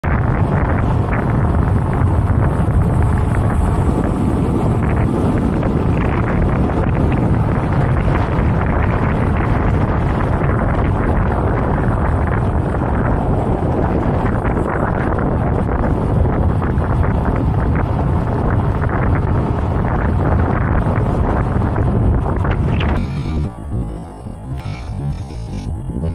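Wind buffeting the microphone of a camera riding along on an electric unicycle at speed: a loud, steady rushing that drops away sharply near the end.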